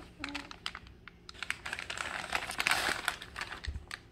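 Kraft-paper mailer being torn open and handled: a run of sharp crackles and crinkles, thickening into a dense rustle about two to three seconds in.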